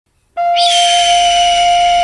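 Native American-style flute in G sounding one long steady note, starting suddenly after a brief silence. A high, hissy sound glides downward above the note as it begins.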